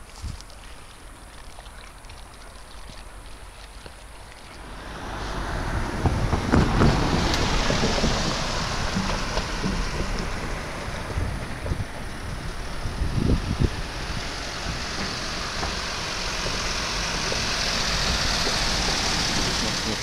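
Wind on the microphone mixed with traffic noise from a car driving over the wooden plank deck of a steel bridge. The noise rises sharply about five seconds in and stays loud.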